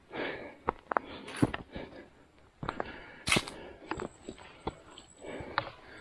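A hiker's footsteps scuffing and crunching irregularly on bare rock and dry leaf litter, with a couple of sharp breaths, the loudest about three seconds in.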